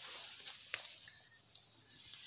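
Faint outdoor background hiss, broken by a short soft click under a second in and a smaller click about halfway through.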